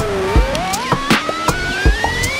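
Synthesizer tone with a rich, buzzy set of harmonics. It slides down in pitch to its lowest point about a quarter second in, then glides steadily upward. Under it plays a sampled drum beat of short hat-like ticks and two kick drums.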